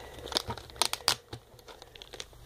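A packet of doll accessories being handled and opened, crinkling and crackling in irregular bursts that come thickest around the middle.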